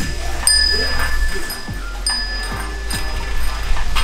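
Small metal bells hanging among heart-shaped wishing tags on a temple tree, chiming in the wind. Clear, high ringing notes are struck about half a second and two seconds in, and each rings on and fades slowly.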